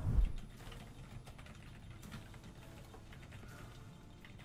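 A low thump at the start, then faint, scattered clicking and ticking, like typing on a computer keyboard.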